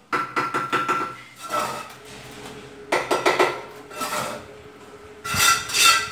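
Steel mason's trowel scraping mortar and tapping clay bricks into place on the top course of a brick wall, in several bursts of clinks and scrapes with a short metallic ring, the loudest near the end.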